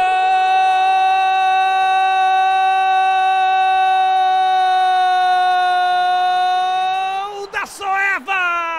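A broadcast commentator's goal call: one long, loud 'gooool' cry held at a steady high pitch for about seven seconds, breaking off near the end and picking up again with a falling pitch.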